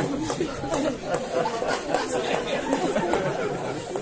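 Overlapping chatter of several voices from a crowd of onlookers gathered close around.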